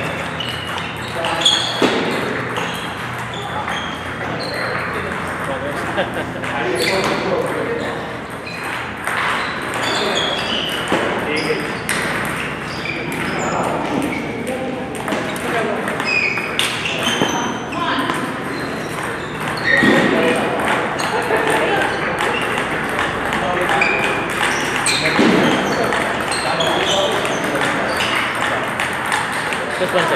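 Table tennis balls clicking off paddles and tabletops in rallies, many short sharp ticks at an uneven pace, from more than one table.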